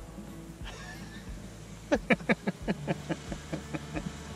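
Two men burst into loud laughter about two seconds in, a quick run of "ha-ha-ha" pulses that fades away, with a short exclamation near the end, over a steady low hum.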